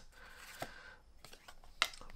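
Faint handling of Pokémon trading cards as the stack is drawn out of an opened foil booster pack, with a soft tap partway through and a sharp click near the end.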